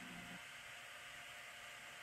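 Faint steady hiss of room tone, with a faint low hum that stops about half a second in.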